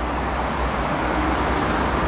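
City street traffic: cars passing on the road, a steady noise of engines and tyres with a low rumble.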